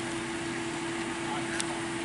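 Steady mechanical hum with one constant low drone, with a single short tick about one and a half seconds in.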